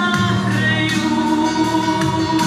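A woman singing into a microphone over instrumental accompaniment, holding one long note through the second half.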